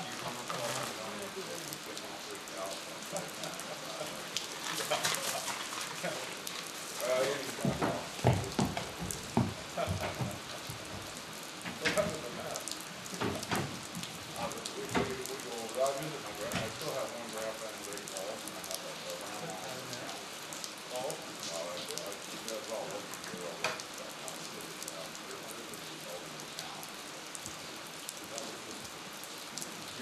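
Steady rain falling throughout. Partway through comes a run of heavy thuds and knocks: a horse's hooves stepping onto and into a two-horse straight-load trailer with a ramp.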